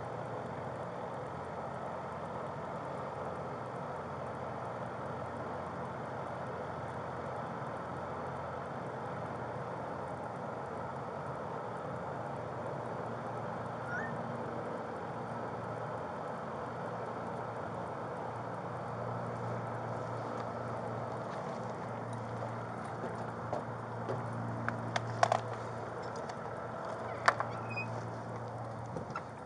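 Steady outdoor background rumble and hum, with a low drone that grows stronger over the second half. Near the end come a few sharp clicks and knocks as a door is handled.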